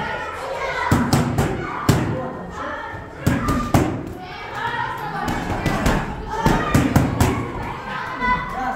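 Boxing gloves striking focus mitts in short combinations: sharp smacks in twos, with a quicker run of about four near the end.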